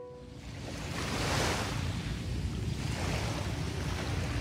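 Heavy ocean surf breaking and washing, swelling over the first second and a half and then running on steadily.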